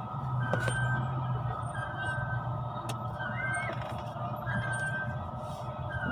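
Steady low hum of a car cabin while driving, with faint steady high tones above it.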